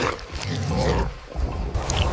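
Ape-like growls and grunts from a group feeding on a carcass, over a steady hiss of rain.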